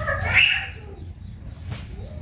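A short, high-pitched wavering cry in the first half-second, rising and then falling in pitch, over a low steady hum.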